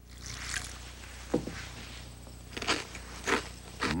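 A handful of short, sharp crunches spaced a second or so apart: crisp cereal flakes being crunched, the noise that wakes the sleepers. Under them a faint steady hum.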